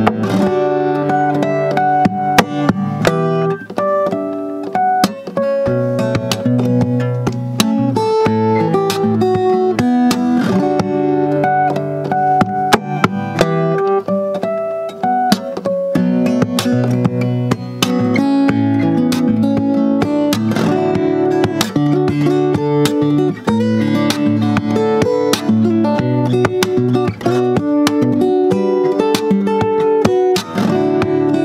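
Most M-03 all-solid acoustic guitar played fingerstyle: a continuous run of plucked notes, with bass notes and a melody sounding together.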